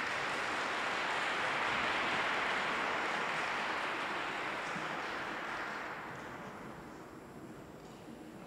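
Audience applauding, swelling over the first couple of seconds and then dying away over the last few.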